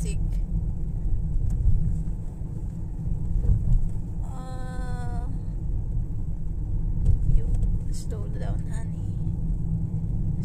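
Low, steady road and engine rumble inside a moving car's cabin. About four seconds in, a short high-pitched vocal sound is held for about a second.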